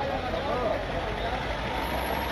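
A motor vehicle's engine running steadily, a low rumble under general street noise.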